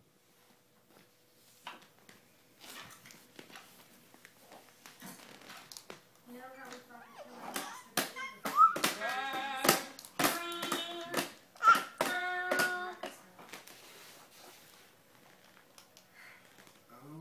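A baby slapping and tapping at the buttons of a plastic electronic baby activity table, with some babbling. From about the middle, the toy plays a short tune of beeping electronic notes for about four seconds.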